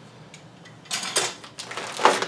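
Small hard plastic parts, the printer's orange shipping clips, clicking and clattering as they are handled and set down: a few light clicks, then a short clatter about a second in.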